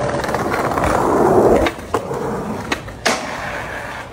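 Skateboard wheels rolling loudly over brick pavers, then several sharp clacks of the board, the loudest about three seconds in, as the skater pops and lands onto a metal rail.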